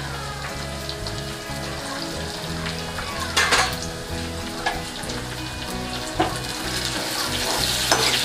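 Chopped onions and tomato pieces sizzling in hot oil in a kadhai, with a few sharp knocks. The sizzle brightens near the end as the mixture is stirred.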